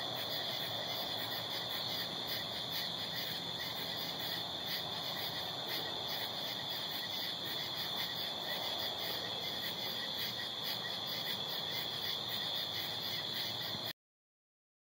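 Steady chorus of night insects chirping, a high, evenly pulsing trill.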